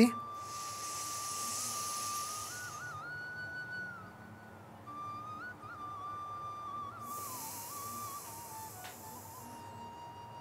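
Two long hissing breaths through the nose, each about two to three seconds: one at the start and one about seven seconds in. One nostril is pressed shut with the fingers, as in a pranayama nostril-breathing exercise. Under them runs background music, a slow melody of long held notes.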